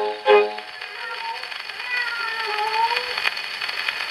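Orchestral interlude from a 78 rpm shellac record played on a wind-up HMV 102 gramophone. A full band chord closes in the first half-second, then a single quiet, gliding melody line plays over the record's steady surface hiss.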